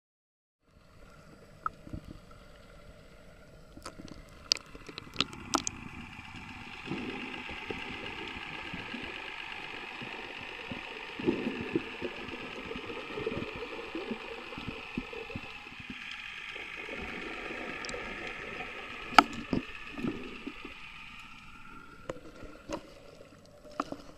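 Water noise heard through an underwater camera: a muffled, steady wash with a faint continuous hum and low rumbling, broken by scattered sharp clicks, the loudest about three-quarters of the way through. It starts after about a second of silence.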